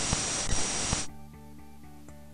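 A burst of TV-static hiss with a thin high whine and a few crackles, cut off suddenly about a second in; after it, quiet music with held notes.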